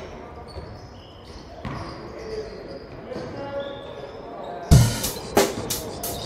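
Background hip-hop track in a quiet break, then sharp drum hits coming back in about three quarters of the way through.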